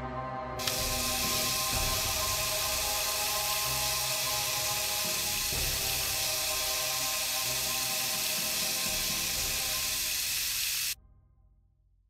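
Water running from a bathroom sink tap into a bucket, starting about half a second in and cutting off suddenly about a second before the end, over background music.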